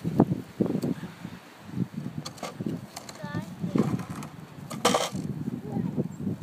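Snow shovel blade scraping and knocking unevenly on a slushy asphalt driveway as a toddler pushes it, with a short, sharper scrape about five seconds in. A small child's brief vocalisation comes about three seconds in.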